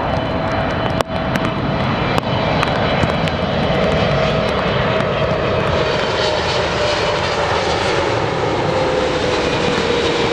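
Twin-engine widebody jet airliner on final approach with gear down, its engine noise loud and steady, with a whine that slowly falls in pitch through the second half as the plane passes.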